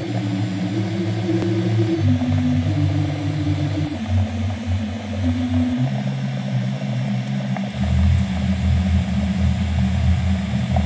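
Low, droning electronic music built from processed moka-pot coffee-maker samples: held synthesizer chords that step to a new pitch every second or two over a faint hiss, with the bass dropping lower about eight seconds in.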